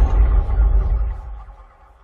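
Tail of an intro music sting: a deep bass boom that fades away over about a second and a half.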